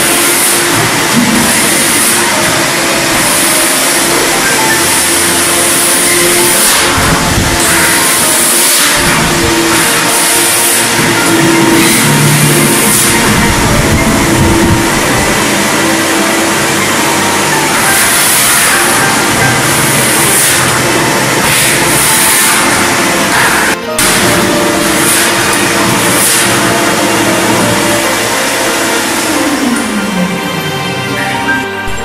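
Background music over the steady running noise of an industrial wet-dry vacuum's motor as it sucks up the floor.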